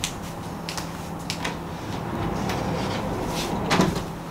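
A sliding bedroom door being rolled open along its track, with a rumble from about halfway through that ends in a knock near the end, as the door reaches its stop. Scattered footsteps come before it.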